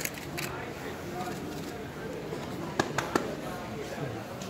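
Voices of several people talking, with three sharp clicks close together about three seconds in.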